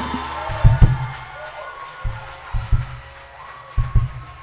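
Live gospel band music winding down: a held note fading away under a few scattered low drum hits.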